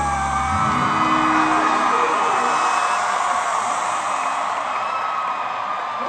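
A live norteño band's last held chord cuts off about half a second in. An arena crowd then cheers, with long high-pitched shouts and whoops over it.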